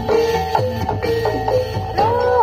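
Live Javanese gamelan music: struck metal-keyed instruments ringing held notes over drum strokes in a steady, driving pattern.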